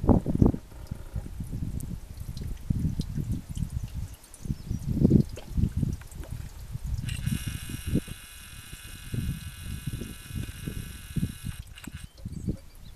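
Wind buffeting the microphone in uneven gusts, a low rumble. From about seven seconds in, a steady high buzzing tone joins it for about five seconds and cuts off just before the end.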